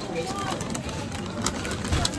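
Background din of a busy fast-food restaurant: indistinct chatter of other diners under a steady hubbub, with scattered small clicks and clatter and a low thump near the end.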